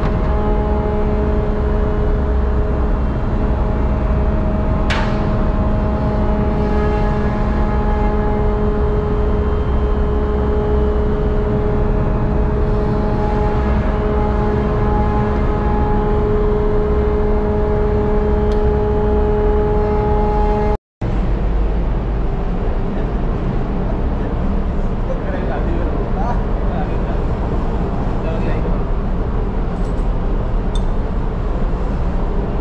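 Ship's engine-room machinery running: a loud, steady drone with a deep rumble and a steady hum of several tones, with a single sharp knock about five seconds in. The sound cuts off abruptly for a moment about 21 seconds in, and then the drone carries on with the hum tones weaker.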